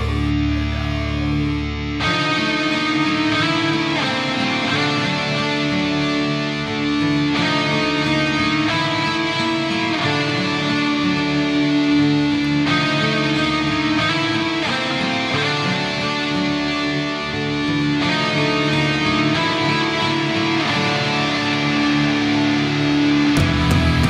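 Instrumental passage of symphonic black metal, led by distorted electric guitars with no vocals. A held low chord gives way to the full band about two seconds in.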